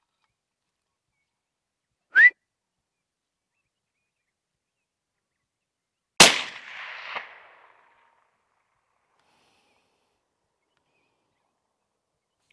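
A single shot from a .260 Remington hunting rifle about six seconds in: a sharp crack whose report trails off over about a second and a half, with a fainter crack about a second after it. About two seconds in, a short, loud rising whistle.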